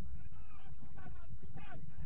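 Several short, distant shouts from football players calling on the pitch, over a steady low rumble of wind on the microphone.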